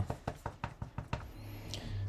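Quick run of light taps, about six a second, an ink pad being patted onto a rubber stamp to ink it. A low steady hum comes in just over a second in.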